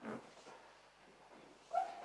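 Handling noise: a soft knock at the start and a short high squeak near the end, the squeak the louder of the two.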